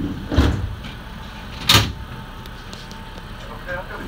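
Two short, sharp bursts of noise inside the cab of a Nankai electric train standing at a platform. The second, about 1.7 seconds in, is louder and higher.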